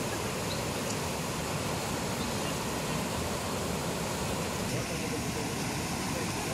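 Floodwater rushing over and around the piers of a submerged concrete bridge: a steady, even rush of water with no breaks.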